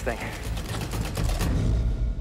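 Wind buffeting the camera microphone: a heavy low rumble with hiss. About three-quarters of the way through, the hiss drops away and only the rumble stays.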